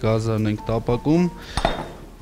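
A glass oil carafe set down on the counter with a single clink about one and a half seconds in.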